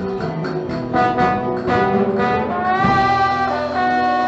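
A band playing an instrumental passage, with a trombone holding long notes over a steady beat from the drums, bass and guitar; about three seconds in the trombone slides up into a longer held note.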